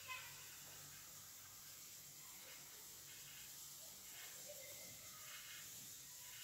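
Near silence: a faint hiss of chopped onions and chicken frying gently in a pan.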